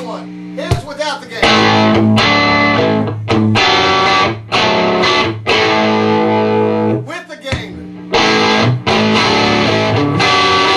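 Electric guitar played through a hand-built Marshall Plexi-style valve amp on its gain setting with the extra cathode boost off: distorted chords struck and held about a second each, with short breaks between them.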